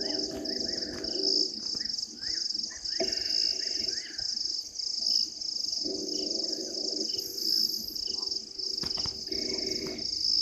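A night chorus of crickets chirping in a steady, even pulse that runs throughout. Over it come short rising-and-falling calls from other night animals, and a lower buzzing sound that comes and goes three times for about a second each.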